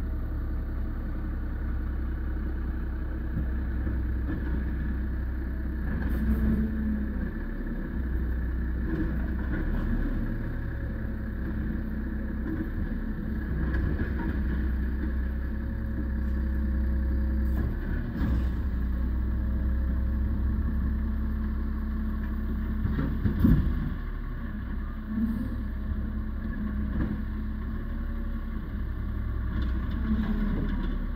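Car engine idling, heard from inside the cabin: a steady low hum, with a few light knocks, the loudest about 23 seconds in.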